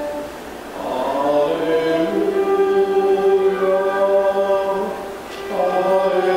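Choir singing a slow liturgical chant in long held notes, one phrase breaking off about half a second in and the next starting about a second in, with another short break about five seconds in.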